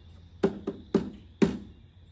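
Four hollow knocks from hands working on a motorcycle's hard saddlebag and its liner panels, irregularly spaced about a quarter to half a second apart, the last one loudest.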